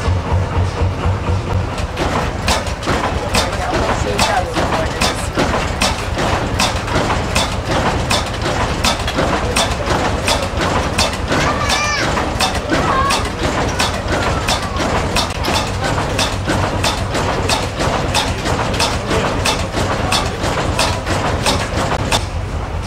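Körting prechamber heavy-oil diesel stationary engine running, with an even knock from each firing at about two a second.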